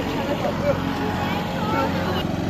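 A vehicle engine running steadily, with a few faint voices over it.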